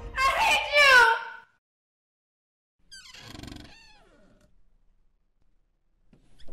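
A woman screams twice in quick succession, each cry falling in pitch. After a short silence, a quieter voice cries out about three seconds in, also falling in pitch.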